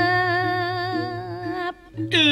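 A voice sings a Balinese tembang in pupuh Sinom, holding one long, steady note with a slight waver. The note cuts off shortly before the end.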